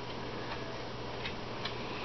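Quiet room tone: a steady low hum with a few faint ticks in the second half.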